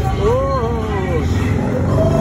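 Street traffic ambience: a steady low rumble of passing vehicles, with a person's voice giving one drawn-out call that rises and falls, about a second long, near the start.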